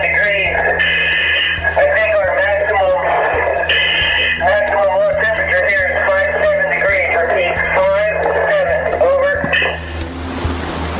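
Background music with sustained, wavering tones over a steady low drone, with short brighter high notes about a second in and again about four seconds in.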